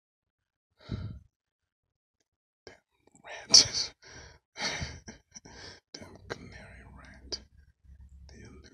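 A person sighing and breathing out hard, with some muttered, whispered words, the loudest breath about three and a half seconds in. A few short clicks come near the end.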